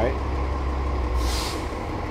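Steady low rumble of road traffic, with a short hiss a little over a second in.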